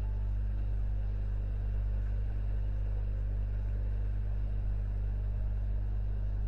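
Steady low electrical hum, a mains hum on the recording, unchanging throughout, with no other sound.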